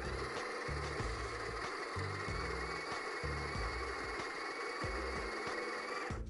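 Breville Smart Grinder Pro conical burr coffee grinder running, grinding beans at a coarse drip-filter setting with a steady whirring grind that cuts off at the end.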